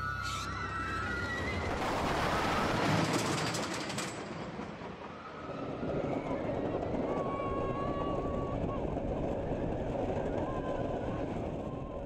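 Roller coaster train running along its track with a steady rush of noise, and riders' voices calling out over it.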